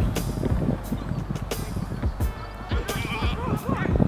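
Wind buffeting the camera microphone during an amateur football match on a grass pitch, with distant players shouting toward the end.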